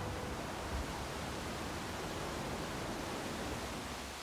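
A steady, even hiss-like noise with no tone in it. The last notes of the music die away at the very start.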